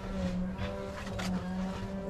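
Distant lawnmower engine running with a steady drone.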